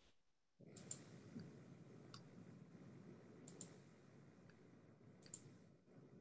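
Near silence: low room noise with about five faint, scattered clicks.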